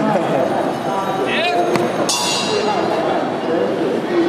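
Murmuring voices in a large hall, with a single bright metallic ring about halfway through that fades away over the next two seconds.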